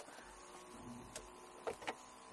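A few faint, light clicks of handling as things are moved around the car's centre-console bin, over a low, quiet hum.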